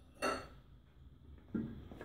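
Two brief knocks of kitchenware: a sharp clink about a quarter-second in, then a softer, duller knock about a second and a half in.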